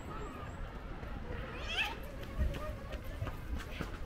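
Outdoor ambience of distant voices over a low rumble, with footsteps on a dirt path and a short, high, wavering call about a second and a half to two seconds in.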